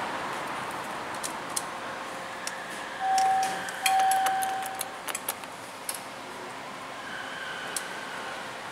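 Elevator hall-call button pressed, sounding a short electronic beep and then a longer one of the same pitch, among light clicks of the button.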